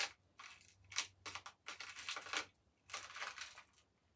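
Clear plastic jewellery container and jewellery being handled while a tangled necklace is picked out: a string of short, irregular rustles and light clicks of plastic and metal.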